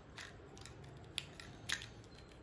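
Plastic parts of a toy robot kit clicking faintly as a leg is handled and fitted onto the body, three short clicks.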